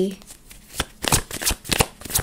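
A deck of tarot cards being shuffled by hand: a run of quick, irregular card snaps, a few a second.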